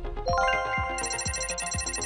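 Background music with a steady low beat, joined about a third of a second in by a bright, ringing electronic chime whose notes hold on, with a higher layer added at about one second.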